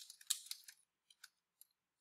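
Computer keyboard keys clicking as a short message is typed: a quick run of faint keystrokes in the first half second or so, then a few scattered taps.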